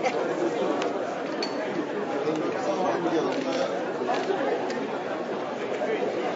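Indistinct chatter of many people talking at once in a large conference hall, with no single voice standing out. A few light clicks are heard over it.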